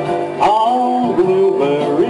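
A man singing into a microphone through a PA over guitar accompaniment, starting a long held, bending note about half a second in.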